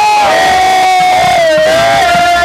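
Men shouting a long, loud war cry of "Oh!", held on one pitch and dipping slightly near the end, with other voices joining in.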